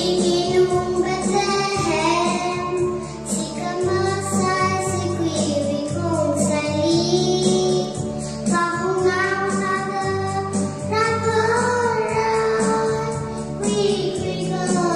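A young girl singing a Christmas song solo into a microphone, over instrumental backing with low sustained chords that change every few seconds.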